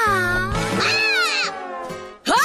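A girl's drawn-out cartoon wail as the sun lounger collapses under her, its pitch dipping and then sweeping up before it stops about one and a half seconds in, over background music.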